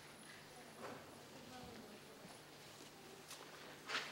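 A quiet hall with a few soft footsteps and knocks on tatami mats as a person rises from kneeling and walks, the loudest just before the end, over faint voices.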